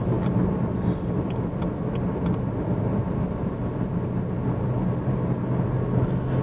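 Cabin noise inside a 2015 BMW X1 on the move: a steady low drone of its 2.0-litre petrol engine and road noise, with a few faint ticks.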